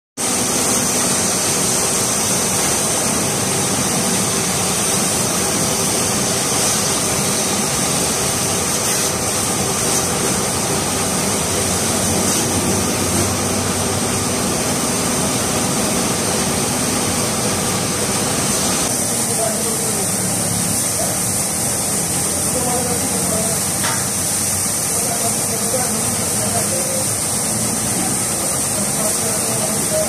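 Water from a garden hose spraying onto cars: a steady, loud hiss, with voices in the background.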